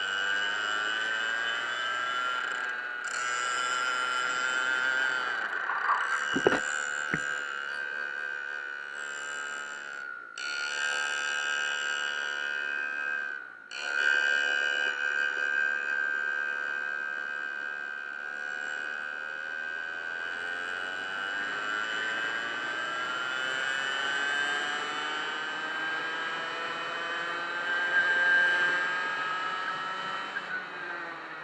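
Go-kart engine heard from onboard, its pitch falling and rising as the kart slows into corners and accelerates out of them, with a couple of knocks about six to seven seconds in.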